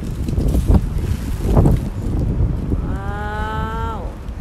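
Clear plastic bale wrap and cut plastic strapping being pulled and handled, a crackling rustle with two louder bumps in the first half. About three seconds in, a steady held vocal note about a second long, like a drawn-out hum, that stops at the end.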